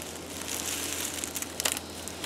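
Faint rustling and crackling of dry leaves and brush, with a soft click about one and a half seconds in.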